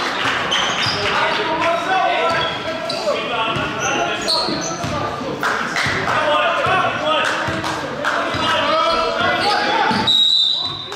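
A basketball bouncing repeatedly on a hardwood gym floor during live play, mixed with players' voices calling out in the gym.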